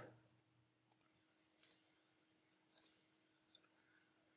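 Faint computer mouse clicks: three short clicks about a second apart over near silence.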